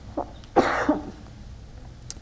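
A person coughing once: one short, harsh burst about half a second in, preceded by a small catch.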